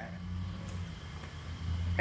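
A car engine running, a steady low drone that swells slightly near the end.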